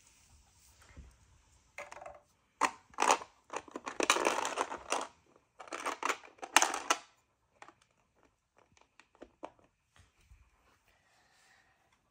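Plastic Lego bricks being handled and fitted: a run of clicks and clatters, densest for a couple of seconds in the middle, then a few faint scattered clicks.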